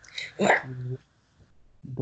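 A man's voice reciting Quranic Arabic: a hissed 's' and a short syllable, a brief pause, then a long drawn-out vowel beginning near the end.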